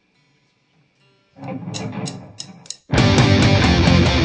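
Live punk rock band with electric guitar, bass and drums coming in together at full volume near the end. Before that, a near-silent start, then a short four-beat count-in of sharp high ticks over quieter instrument sound.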